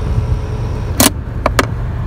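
Slime portable 12-volt tire inflator's compressor running with a steady, loud, low pulsing hum while it fills a flat tire. A few sharp clicks sound about a second in.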